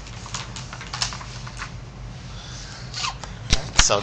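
Paper handling on a desk: scattered light clicks and rustles over a low steady hum, then a couple of sharp knocks near the end as a hand grabs and slides the paper sheet.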